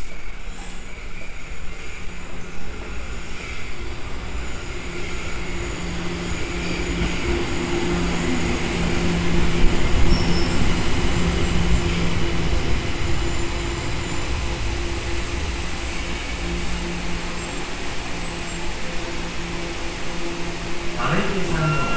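A Tokyo Metro Ginza Line subway train pulls into the station and slows to a stop, loudest about halfway through as the cars pass. A steady low hum runs under it.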